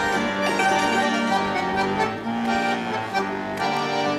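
A hammered dulcimer and a button accordion playing a tune together, the accordion holding sustained notes under the struck, ringing dulcimer notes.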